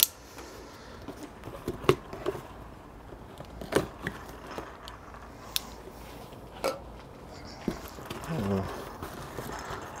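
Cardboard shipping box being cut open with a pocket knife and unpacked by hand: packing tape slit, cardboard flaps and wrapping rustling, with several sharp clicks and taps spaced a second or two apart.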